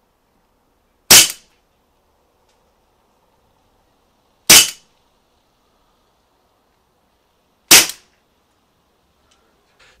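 A 1911-style CO2 air pistol fired three times, about three seconds apart, each a single sharp shot. The gun was chilled for an hour in a fridge, and the cold CO2 lowers its shot velocity.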